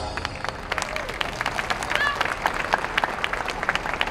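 Audience applauding as a dance performance finishes, a steady patter of many hands clapping, with a brief voice heard about two seconds in.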